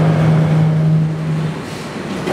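A steady low-pitched hum on one unchanging note that cuts off about a second and a half in.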